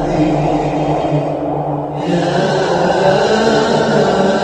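Intro music of chanting voices on long held notes, with a new chanted phrase beginning on "Ya" about halfway through.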